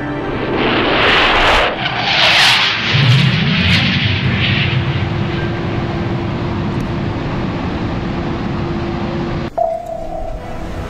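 Fighter jet noise as the jet dives past, rising in several loud rushing swells over the first four or five seconds, then settling into a steadier rush with a held musical note underneath. It cuts off suddenly near the end.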